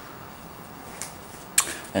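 Microfiber towel wiping over car paint, a faint, even rubbing, with a sharp click about one and a half seconds in.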